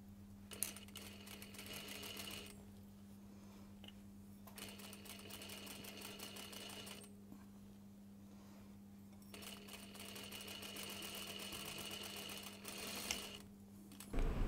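Industrial sewing machine stitching a seam in three short runs, stopping and starting again between them, over a steady low hum.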